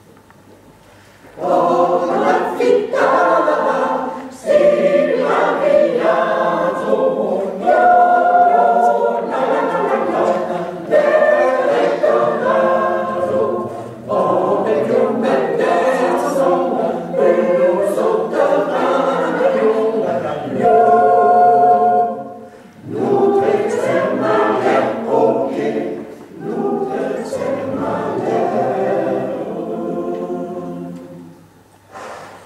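Mixed choir of men and women singing a cappella in parts, a lively round-dance song in Vaudois patois. The singing starts about a second and a half in and runs in phrases with short breaks between them.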